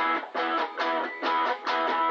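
Stratocaster-style electric guitar strummed in short, rhythmic chord stabs, about two a second, each cut off briefly. The chords are played high up the neck around E, moving toward D.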